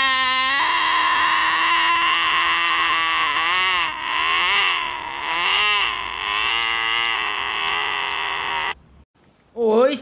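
Donkey braying in one long, wavering wail with a few dips in pitch, cutting off suddenly about nine seconds in.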